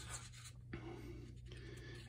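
Faint rustle of a hand sliding over and gripping a glossy paper page of a large hardback book, ready to turn it, over a low steady hum.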